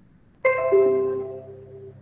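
Electronic notification chime from the computer or meeting software: a short run of bell-like notes stepping downward, starting suddenly about half a second in and fading away over about a second and a half.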